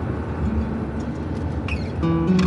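Steady low rumble of a car cabin, with faint acoustic-guitar background music held underneath.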